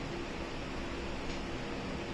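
Steady background hiss with a faint low hum, with no speech over it.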